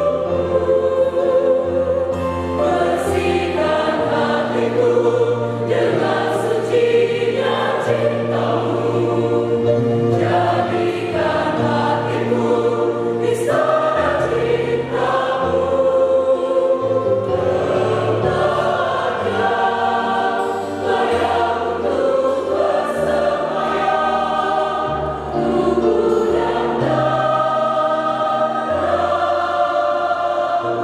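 Mixed choir of men's and women's voices singing a Catholic hymn in Indonesian in full harmony, with long held chords that shift together.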